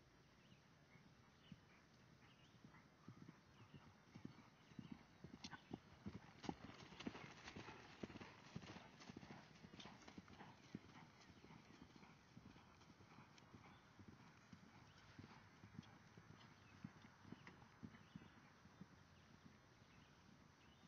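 Faint hoofbeats of a Fjord horse cantering on grass. They grow louder about a third of the way in as the horse passes close by, then fall away again.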